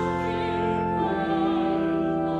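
Congregation and choir singing a hymn in long held notes with keyboard accompaniment.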